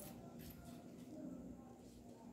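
Near silence: faint handling of a grosgrain ribbon bow by hand, with a couple of soft clicks in the first half second over quiet room tone.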